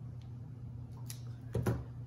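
Scissors snipping the end off a Backwoods cigar wrapper leaf: a few short clicks, the loudest near the end, over a steady low hum.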